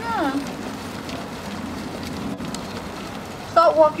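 A group of horses walking on a sand arena, a steady rustling noise with faint soft ticks. A brief high call falling in pitch opens it, and a voice says "that way" near the end.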